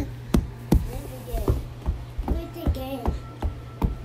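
A baby's short babbling sounds over a regular knocking, about two or three knocks a second, with a faint steady tone in the second half.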